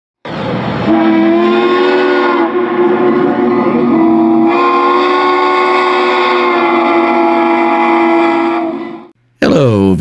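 Steam locomotive chime whistle sounding one long blast of several tones at once, its tone shifting a couple of times, then fading out near the end.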